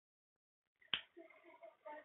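A single sharp click about a second in, otherwise near silence with only a very faint murmur after it.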